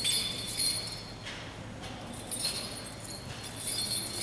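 Small bells on a swung censer jingling in repeated short shakes, high and metallic.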